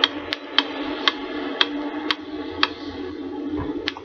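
Clock ticking, about two ticks a second, over a steady low hum: the page-turn signal of a read-along book-and-record.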